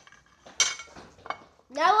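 A metal butter knife clinks once against a dish about half a second in, with a short ring, then gives a fainter tick a little later.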